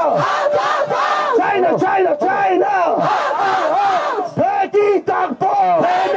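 Protesters chanting slogans, led by a man shouting them: loud, quick, rhythmic shouts that run on without a break.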